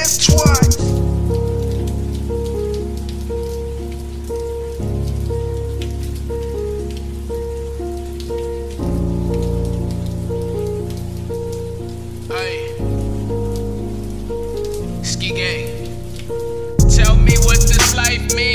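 Instrumental break in a hip hop beat: the drums drop out, leaving sustained synth chords that change about every four seconds and a short repeating high note, over a steady rain-like hiss. The drums come back in near the end.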